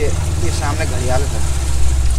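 Small motorboat's engine running slowly and steadily as a low hum, with a voice over it.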